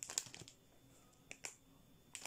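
A few faint, short crinkles and clicks of a plastic instant-noodle packet being handled, a couple just after the start and two more about a second and a half in, with near quiet between them.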